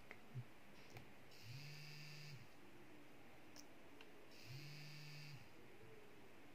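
Small vibration motor buzzing faintly twice, about one second each time, with a steady low hum: each buzz is the motor switched on by an Arduino when a press on the force-sensitive resistor reads above the 1000 threshold. A few faint clicks come before and between the buzzes.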